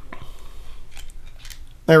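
Small metal parts of a paintball gun regulator being unscrewed and handled by hand: faint scattered clicks and light scraping of metal on metal as the threaded bottom piece comes free.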